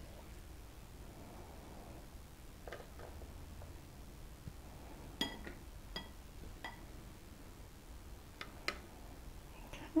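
Faint, scattered clicks and clinks of a serving utensil against a bowl and plate as green beans are dished up. Three clinks in the middle ring briefly.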